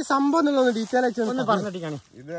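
A man talking in unbroken speech; no other sound stands out.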